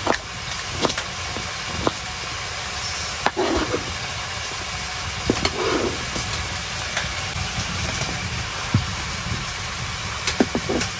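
A kitchen knife cutting a red pepper on a plastic chopping board: a handful of short, irregular knocks as the blade meets the board. They sit over a steady rushing background noise.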